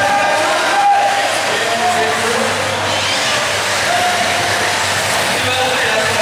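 Several 1/8-scale nitro RC buggy engines revving and whining in short rising and falling bursts as the cars race around the track. The sound echoes through the large hall over a steady background of voices.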